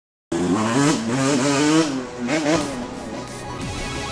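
Intro jingle: a motorcycle engine revving over music, its pitch sliding up and down, starting abruptly just after the start and dropping to quieter music about halfway through.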